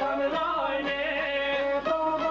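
Albanian folk song: men singing a held, wavering melody to long-necked çifteli lutes.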